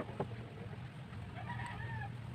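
Hands wrapping a small plastic spray bottle in packing material: soft handling noise with one sharp click just after the start. Near the end a short pitched call, like a distant bird's, sounds over a steady low background hum.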